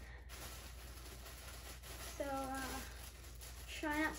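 A girl's short hummed vocal sound about two seconds in, over a faint steady low hum; she begins speaking near the end.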